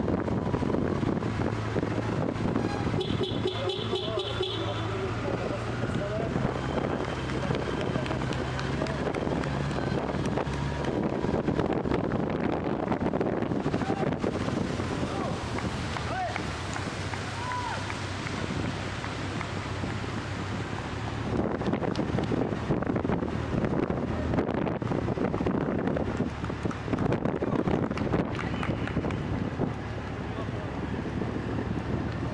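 Wind rushing over a moving microphone with motorcycle engines running steadily underneath as they pace a runner.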